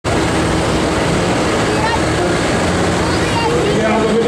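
Pulling tractor's engine running loud and steady at the start line, exhaust smoking, with a voice speaking over it.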